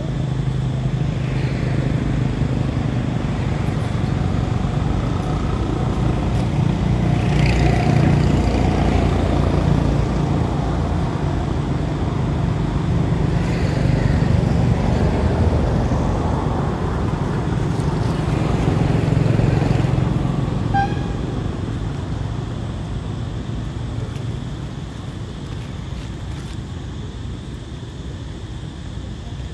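Motor-vehicle traffic rumbling and swelling as vehicles pass, with a short high toot about three-quarters of the way through.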